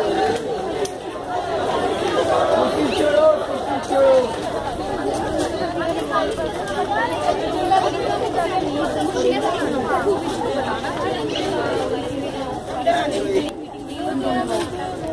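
A crowd of people chattering: many voices talking at once and overlapping, steady throughout.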